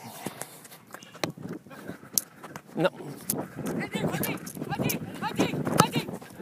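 Footballers' voices calling to each other at a distance across the pitch during play, busier in the second half, with a few sharp knocks of the ball being kicked.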